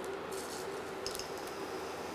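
Cumin seeds sizzling in hot oil in a frying pan, a steady hiss as the seeds begin to fry.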